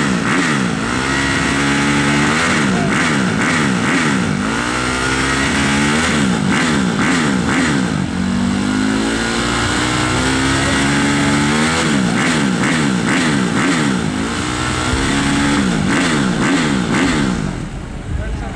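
Motocross bike engine being revved repeatedly, its pitch rising and falling in quick sweeps as the throttle is blipped over and over.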